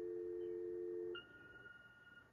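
Telephone dial tone, a steady two-note tone that stops about a second in, followed by a fainter, higher single beep held for about a second.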